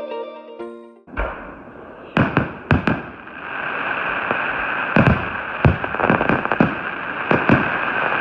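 Background music on a plucked string instrument cuts off about a second in, followed by a fireworks display: about ten sharp bangs over a steady hiss of burning fireworks.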